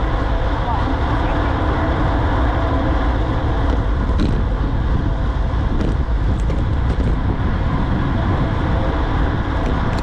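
Steady wind rush and road noise on the microphone of a camera carried on a road bike at riding speed, with a few faint clicks near the middle.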